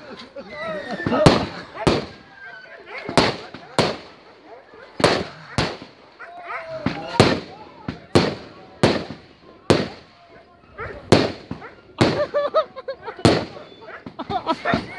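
Aerial firework shells bursting in a long series of sharp bangs, roughly one a second and often in pairs, with people's voices between the bangs.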